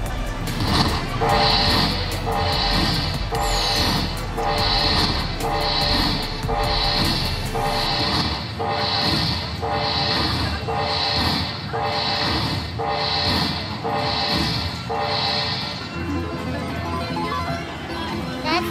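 Slot machine win rollup: a chiming jingle repeating about once a second while the win meter counts up the free-games award, stopping a couple of seconds before the end.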